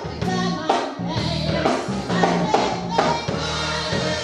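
Congregation singing gospel music with instrumental backing and a steady beat.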